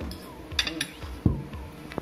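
Metal forks clinking and scraping on a ceramic plate: a quick cluster of clinks about half a second in, then a louder knock a little past one second and another clink near the end.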